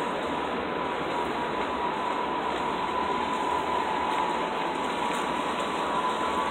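Steady city street noise of traffic, with a steady high-pitched whine running under it.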